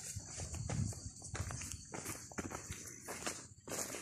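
Hiker's footsteps on a dirt trail, about two steps a second, over a steady high hiss.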